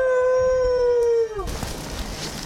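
A wolf howl: one long held note that rises at the start and falls away about a second and a half in. The surrounding outdoor noise drops out while it sounds, which marks it as an edited-in sound effect.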